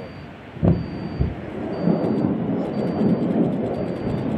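Salvo of rockets launching: a sharp boom a little under a second in, a second smaller thud just after, then a continuous rough rumble of the rocket motors.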